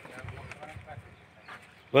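Quiet outdoor background with faint, indistinct sounds and a small click about one and a half seconds in. A man's voice starts loudly right at the end.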